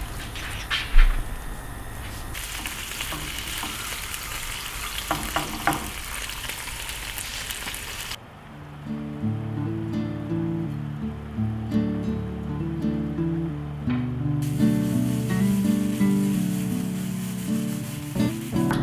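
A spoon stirring vegetables into a stew in a cast-iron pot, clicking against the pot a few times over the steady hiss of the stew cooking on a gas burner. About eight seconds in this cuts to background music, and from about fourteen seconds in meat sizzles in a frying pan under the music.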